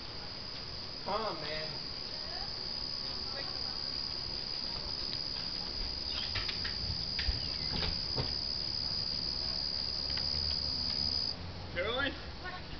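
Crickets trilling steadily at a high pitch, the trill cutting off shortly before the end. A brief voice is heard about a second in, and there are a few faint clicks.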